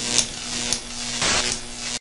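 Hissing sound effect on an animated end graphic: two sharp ticks in the first second, then a louder hissy swell about a second and a quarter in, over a faint steady low hum.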